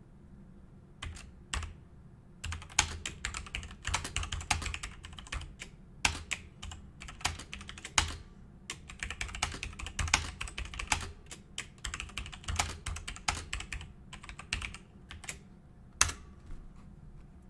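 Typing on a computer keyboard: a long run of quick key clicks with short pauses, starting about a second in and stopping shortly before the end.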